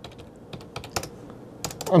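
A series of quick computer-keyboard key clicks, in two small clusters, as a stock code is typed in to call up the next chart.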